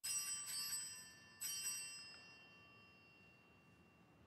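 Small bell struck three times within about a second and a half, the second stroke softer, its bright ring fading slowly afterwards: the bell that signals the start of Mass.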